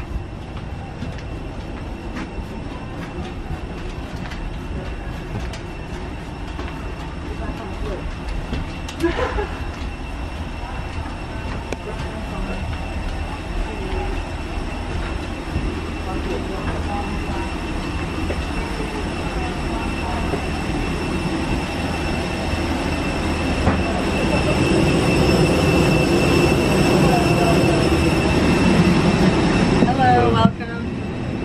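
Steady hum and high whine of a parked airliner and its jet bridge, heard while walking down the bridge. It grows louder near the end as the aircraft door comes close, with a brief squeak about nine seconds in.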